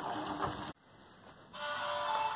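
A metal ladle stirs thick carrot kesari sizzling in a steel pan, scraping and bubbling, and it cuts off suddenly under a second in. After a short hush, background music starts.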